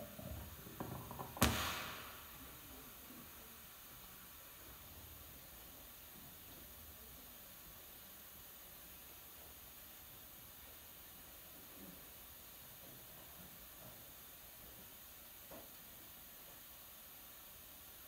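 Quiet room tone with a steady hiss, broken by one sharp knock about a second and a half in, with a few softer knocks just before it. Two faint taps come later.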